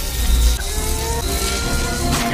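Film sound effect of a wizard staff's lightning spell, electricity crackling at its tip over a deep, steady rumble, with the music score underneath.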